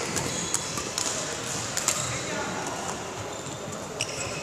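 Badminton rackets striking shuttlecocks and shoes hitting the court floor: a string of irregular sharp clicks and knocks, with voices in the background.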